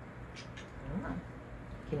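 A puppy gives one short whine about halfway through.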